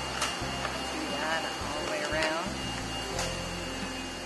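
Steady hum of a sail-cutting plotter's vacuum running in the background, with stiff Dacron sailcloth rustling and crackling as it is handled, loudest just after the start and about three seconds in.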